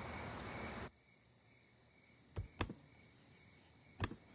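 Crickets chirping in a steady night chorus, cutting off abruptly about a second in. Then a quiet room with two quick clicks of laptop keys.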